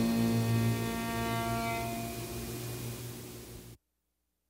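The last strummed acoustic guitar chord of a lo-fi song ringing out and dying away over a steady low hum and hiss. It cuts off suddenly to silence near the end.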